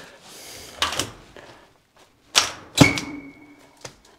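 Stainless steel chimney pipe being handled and fitted together: a soft scrape, then a few sharp metal knocks, the last one leaving the pipe ringing for about a second.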